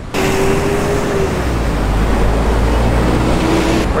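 Loud city street traffic with a deep, steady low rumble, and a vehicle's steady engine hum in the first second and again near the end.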